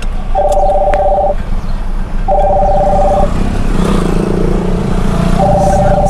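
Phone call ringback tone: a steady two-pitch tone about a second long, heard three times with gaps of one to two seconds, over the low steady running of the car and street traffic.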